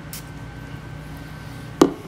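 Faint brief sniffs as two people smell perfume sprayed on their wrists, over a low steady room hum, with one sharp click near the end.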